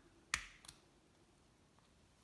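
The plastic case of a Ford remote key fob snapping apart as it is prised open: one sharp snap about a third of a second in, then a fainter click.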